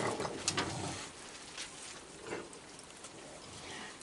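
A crowd of raccoons eating on a wooden deck: scattered small clicks and crunches of food pieces, busiest in the first second, then fainter.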